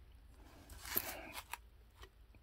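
Hard plastic graded-card slab being handled and regripped: a faint, brief rustle about a second in, with a few light plastic clicks.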